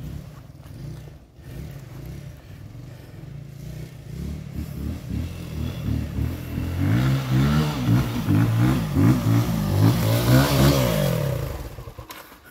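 Dirt bike engine approaching up a trail, growing steadily louder, its pitch rising and falling as the throttle is worked on the climb. It drops away suddenly near the end as the bike comes to a stop.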